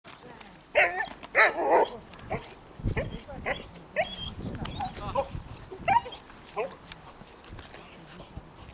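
Young German Shepherd barking in short, fairly high calls while being worked up in protection training. The two loudest barks come about a second in, followed by a string of quicker, quieter ones.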